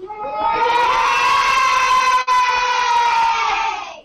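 A classroom of schoolchildren cheering and screaming together in one long, high-pitched shout that swells up in the first half-second and fades near the end. It comes through a live video-call link, with a brief dropout just past halfway.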